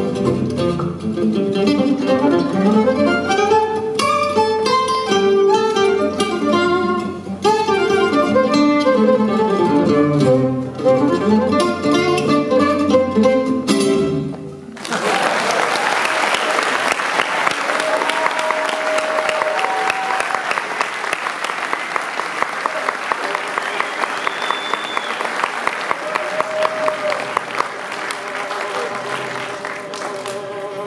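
Gypsy jazz solo on an oval-soundhole Selmer-Maccaferri-style acoustic guitar: fast runs of single picked notes and chords, stopping about halfway through. It gives way suddenly to audience applause, with the band faintly audible underneath.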